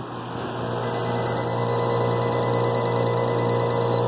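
Heat pump outdoor unit running: a steady compressor and fan hum with several steady tones over it, growing slightly louder.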